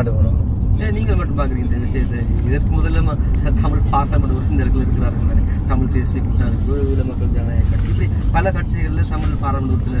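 A man talking in a moving car's cabin, over the car's steady low road and engine rumble.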